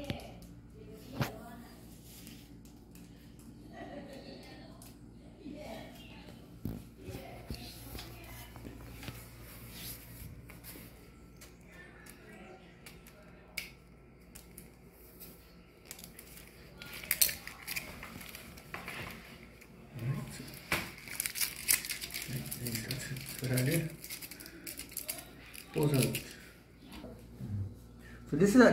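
Clear plastic tape and the thin plastic sheeting of a bamboo kite being handled: scattered small clicks and soft rustles, turning to busier crinkling in the last ten seconds or so.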